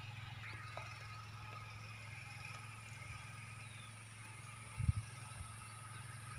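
Faint outdoor ambience: a steady low hum with a few faint, thin high tones, and one brief low thump about five seconds in.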